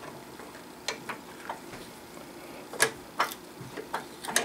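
A handful of short, sharp metal clicks and clinks from an adjustable wrench on a 9/16-18 hand tap as it is refitted and turned, the loudest two close together about three seconds in.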